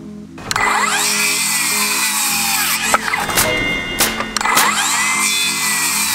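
Circular saw cutting timber, starting about half a second in, its whine dipping and recovering twice as the blade loads in the cut, over background guitar music.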